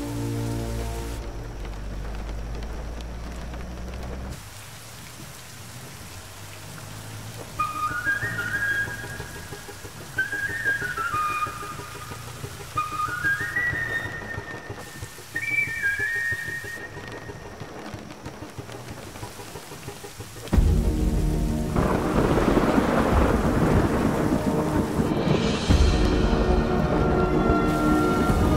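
Steady heavy rain falling on a road, with a few short, high melodic phrases in the middle. About twenty seconds in, a sudden loud, deep rumble of thunder joins the rain.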